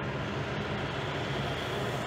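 Steady low mechanical hum under an even background noise, with no sudden sounds.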